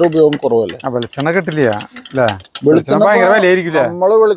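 Speech only: a person talking continuously, with a few faint clicks between phrases.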